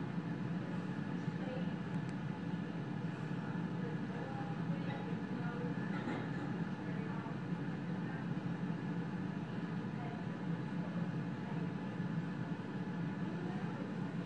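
Strong wind blowing across open snow, a steady low rumble that hardly rises or falls.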